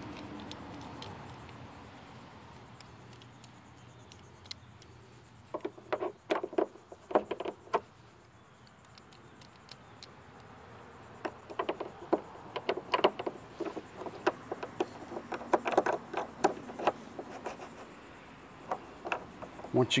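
Small hard-plastic clicks and rattles from a YakAttack gear-track mount base being handled and fitted into a kayak's molded gear track, in two spells of quick clicking.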